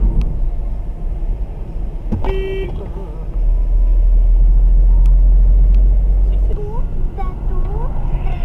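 Car interior road and engine rumble while driving, with one short car-horn toot about two seconds in. The rumble grows heavier in the middle and eases again near the end.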